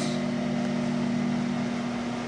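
Steady machine hum of a web-handling test stand running a non-woven web through its rollers and air-loaded nip assemblies: a low, even drone with a light hiss over it.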